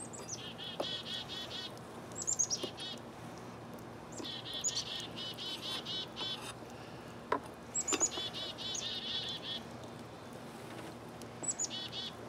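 A songbird singing repeated phrases every few seconds, each a few high down-slurred notes running into a fast, even trill. A few light knocks sound in between.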